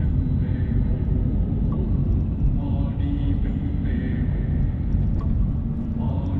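Steady low rumble of a Mercedes-Benz car on the move, its road and engine noise heard from inside the cabin.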